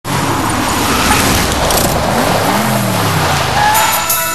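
A car driving fast with a loud rush of road and wind noise; about two seconds in, its engine note climbs and then falls away.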